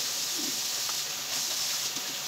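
Tap water running into a kitchen sink, a steady hiss, with light wiping and handling at the basin.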